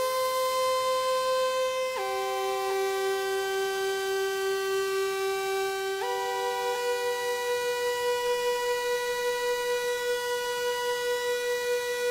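Pioneer Toraiz AS-1 monophonic analog synthesizer playing a sustained pad patch in long held notes. The pitch steps to a new note about two seconds in and again about six seconds in. With its BBD delay effect on, each old note trails briefly under the next.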